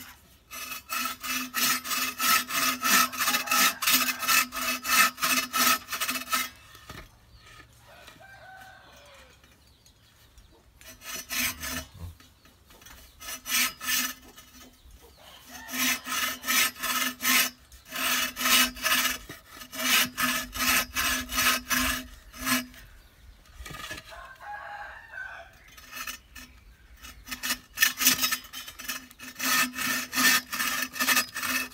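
Bow saw cutting through a thick-walled green bamboo culm, rasping back-and-forth strokes at about two to three a second, in several spells with short pauses between them.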